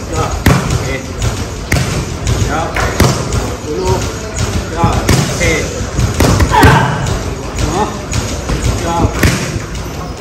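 Boxing gloves smacking focus mitts during pad work: a steady run of sharp slaps, about one or two a second, sometimes in quick doubles.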